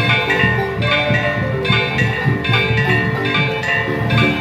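Marimba music: many struck notes ringing together in chords over a low bass, to a steady beat.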